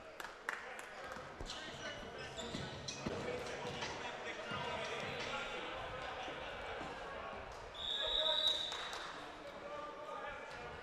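Referee's whistle blown once, a steady shrill tone of about a second near the end, over the echoing murmur of voices and a volleyball bouncing on the hardwood gym floor; the whistle comes as the server sets up at the line, the signal to serve after the review.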